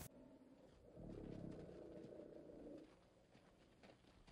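Near silence, with a faint low sound from about one second in to nearly three seconds in.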